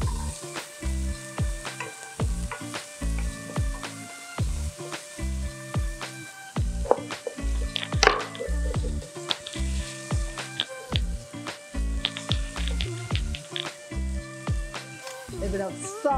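Background music with a steady beat over vegetables sizzling as they sauté in oil in a steel pan. Sharp taps come now and then, the loudest about halfway through.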